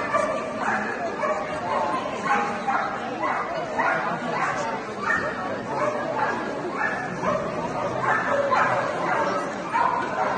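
A dog barking and yipping over and over, in short high calls about once or twice a second.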